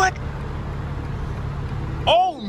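2021 BMW M4 Competition's twin-turbo straight-six running at a steady low rumble, heard inside the cabin while the car creeps into a parking space under its automatic parking assistant.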